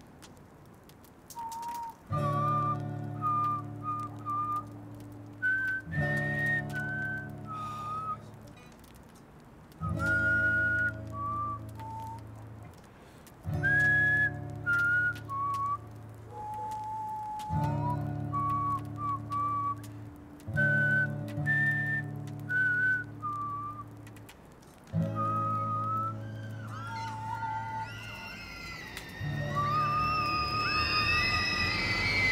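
Acoustic guitar playing slow strummed chords, a new chord about every three to four seconds, with a whistled melody over it. Near the end the music grows fuller and higher.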